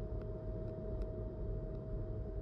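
A steady low mechanical hum with one constant mid-pitched tone running through it, and a few faint ticks.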